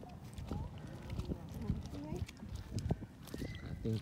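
Footsteps on wet tidal mud, an irregular series of soft knocks, with faint voices in the background.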